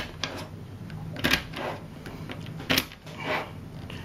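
Zen Magnets neodymium magnet spheres clicking and rubbing as a flat sheet of them is sliced into long straight strips with the edge of a thin card. A few sharp clicks stand out, the loudest about a second and a third in and again near three seconds.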